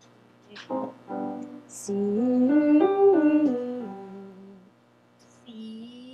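A vocal warm-up with keyboard: a run of notes steps up and back down, loudest at the top of the run, then fades. Near the end a voice slides briefly up and down in pitch.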